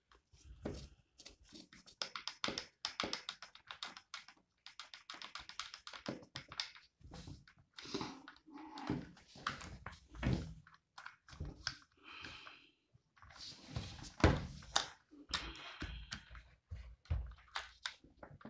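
Small clicks, scrapes and rustles of a screwdriver and gloved hands working at an airsoft rifle's lower receiver to remove the magazine release screw. A few dull thumps from people walking around upstairs, the loudest about two-thirds of the way through.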